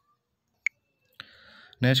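Near silence broken by one short, sharp click about two-thirds of a second in, then a faint hiss for about half a second just before a man's voice begins near the end.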